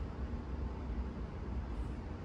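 Steady low hum with a faint even hiss, with no distinct clicks or other events.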